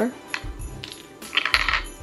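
Small hard plastic play-food pieces clicking and clattering as they are handled and set down, with a short louder clatter about one and a half seconds in.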